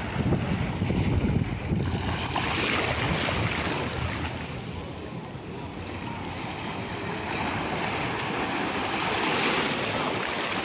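Small waves washing over a shallow rock shelf, the hiss of water swelling and easing twice. Wind rumbles on the microphone in the first couple of seconds.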